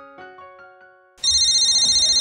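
A mobile phone's electronic ringtone starts abruptly a little over a second in: a loud, fast-warbling trill of high tones. Before it, a few sustained musical notes fade away.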